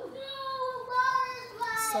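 A high-pitched voice holds a long sung note for over a second, then moves into a second note near the end.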